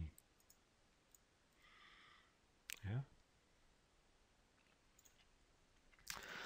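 Near silence with faint room tone, broken by one sharp click about two and a half seconds in, right before a short spoken "yeah?".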